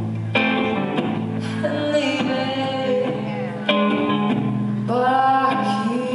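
Live performance of a pop song: a woman singing over her own electric guitar, with the band playing along.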